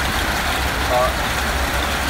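Heavy rain falling steadily, an even hiss with a low rumble underneath.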